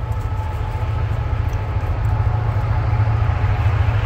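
A train passing at a distance: a steady low rumble with a faint steady ringing above it.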